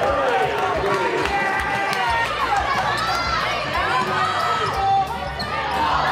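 Basketball game sound in a gym: a basketball being dribbled on the hardwood floor with short thuds over the first couple of seconds, under players and spectators shouting and calling out.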